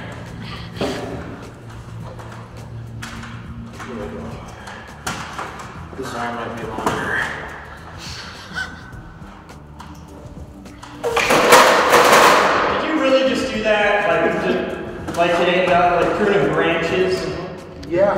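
Long-handled cable cutters being squeezed through a thick copper power cable, with scattered knocks; about eleven seconds in a loud burst as the cable gives way, followed by voices whooping and laughing.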